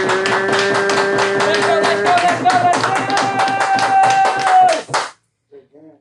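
A voice holding long drawn-out notes, a lower one and then a higher one, over fast rhythmic clapping or tapping. It all cuts off suddenly about five seconds in.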